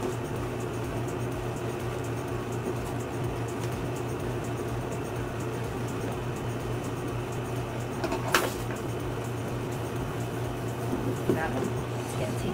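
Small scissors cutting into a cardboard toy box, with one sharp click a little past eight seconds in, over a steady low hum in the room.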